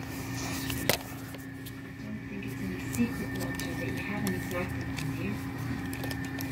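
Faint voices in the background over a steady electrical hum, with a sharp click just under a second in and another about three seconds in.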